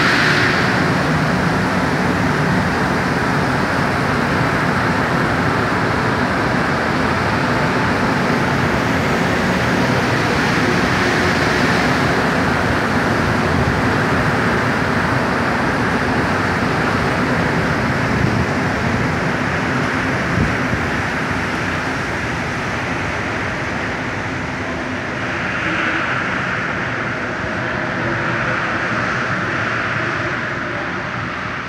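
Montréal métro MR-73 rubber-tyred train running along the station platform: a loud, steady rumble and hiss that eases a little past the middle, then swells again near the end.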